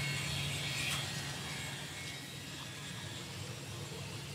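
Steady low hum and hiss of the space station's cabin ventilation fans and equipment, with a faint click about a second in.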